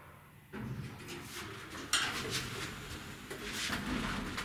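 Elevator car and hoistway doors sliding open on arrival at the floor: a door-operator mechanism running, starting about half a second in, with a sharper rattle near two seconds.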